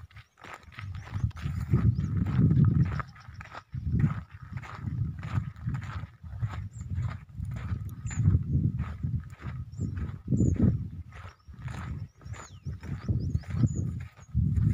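Wind buffeting a phone microphone in irregular gusts of low rumble, with a few faint high chirps in the second half.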